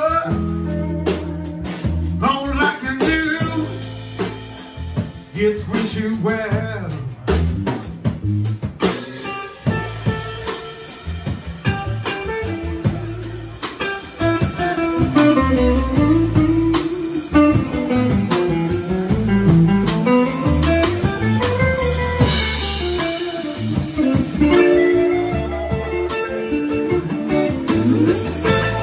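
Live blues trio: electric guitar playing lead lines over bass guitar and drum kit, with notes bending up and down through the middle.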